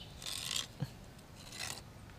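Two short scraping, rustling noises, a little over a second apart, with a brief low sound between them.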